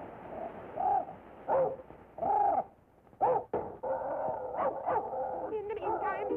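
Cartoon dog barks: a handful of separate short calls, each rising and falling in pitch, about a second in and again around three seconds in. A busier, steadier sound takes over in the last two seconds.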